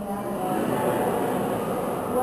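Many voices of a congregation reciting a prayer together, heard as a blurred mass of speech with no clear single voice.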